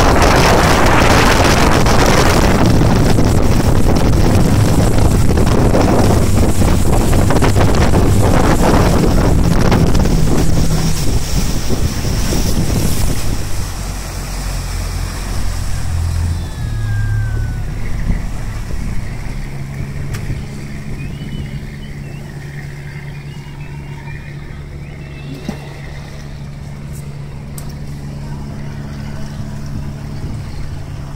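Towing speedboat running at speed, its engine buried under wind on the microphone and the rush of the wake, for about the first twelve seconds. It then throttles back and settles to a quieter, steady low engine hum as the boat slows.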